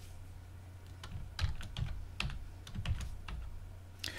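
Computer keyboard being typed on: a quick, irregular run of about nine key clicks, after a near-quiet first second.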